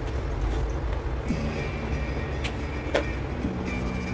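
Soft background music over a low steady hum, with two light clicks about two and a half and three seconds in, from a kitchen knife touching the plastic box as set burfi is cut into pieces.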